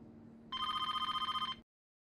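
A telephone rings once: a rapid trilling ring about a second long that starts about half a second in and cuts off abruptly.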